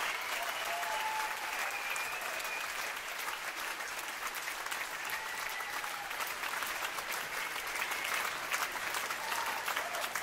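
Concert audience applauding steadily after a song, dense clapping from a large crowd.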